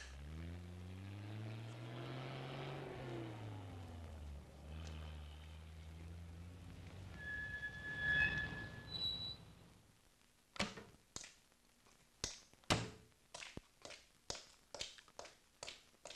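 Car engine with a pitch that rises and then falls back and settles as the taxi slows, followed by a brief high squeal. Then comes a run of irregular sharp knocks.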